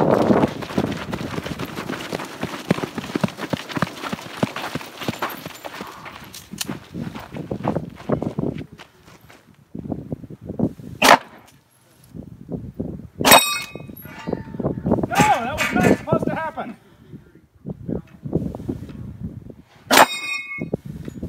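Running footsteps on dirt and rattling gear, then a few loud pistol shots in the second half. Each hit is followed by the ringing clang of a steel target plate.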